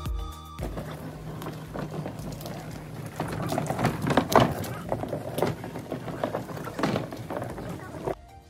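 A short end of music, then a wheeled plastic garbage cart rolling over asphalt, its wheels and body rattling with irregular knocks.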